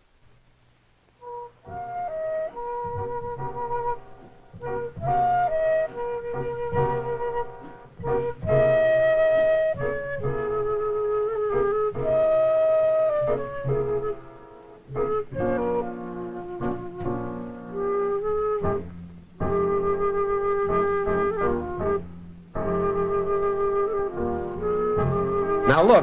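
Instrumental background music: a flute-like woodwind melody played in short phrases with brief pauses, starting about a second and a half in.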